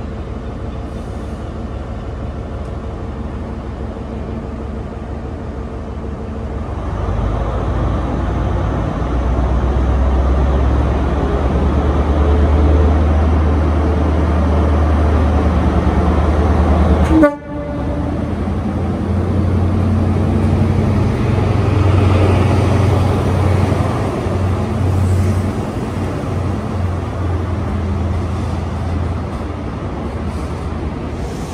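High Speed Train's Class 43 diesel power car running in, its deep engine rumble building from about seven seconds in, with a train horn sounded. There is a brief break about halfway through, then the engine rumble and the noise of passing coaches carry on.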